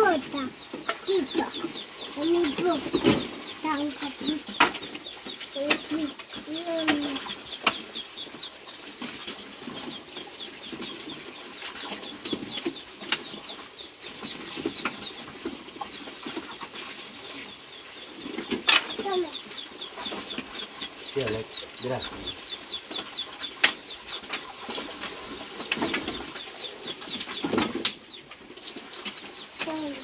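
Dry wooden firewood sticks clattering and knocking against each other and the plank deck as they are picked up and stacked, in scattered knocks throughout. A rapid high chirping runs in the background at times.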